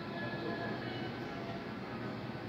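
Steady café background noise, a constant rumble and hum with faint murmur of voices; the milk pour itself is not distinctly heard.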